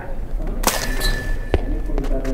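A thrown ball striking something hard: a sharp crack about two-thirds of a second in, then a single ringing tone that holds for about a second, with a short thud just before it fades.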